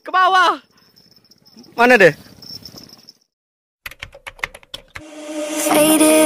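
Two short vocal exclamations from a man, falling in pitch, with a faint high steady whine behind them. After a brief dead silence comes a quick run of sharp clicks, then electronic music swelling in near the end.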